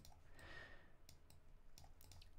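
Near silence with a few faint, sharp computer mouse clicks.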